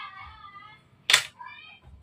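A domestic cat meowing faintly in two calls, with a short sharp hissy noise about a second in between them.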